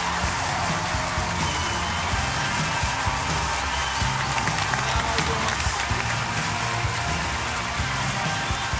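Studio audience applauding steadily over loud show music.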